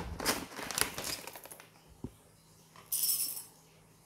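Whole coffee beans clattering as they are scooped from a bag and tipped into a small metal dosing cup: a rattle of beans against metal in the first second and a half, a single click about two seconds in, and a short rustle about three seconds in.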